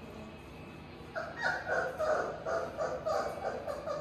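Four-week-old Labrador puppy crying in a string of short, high-pitched whining yelps, starting about a second in.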